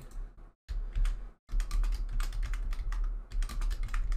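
Typing on a computer keyboard: a quick, irregular run of keystroke clicks over a steady low hum.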